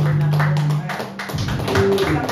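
A band's final chord, held on acoustic guitar, rings out and stops about a second in. Sharp taps and a few scattered claps follow.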